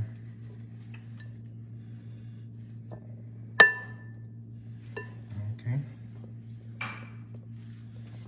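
Balloon whisk stirring a flour-and-spice dry mix in a glass bowl, with a sharp ringing clink about three and a half seconds in as the whisk strikes the glass, and a fainter clink over a second later. A steady low hum runs underneath.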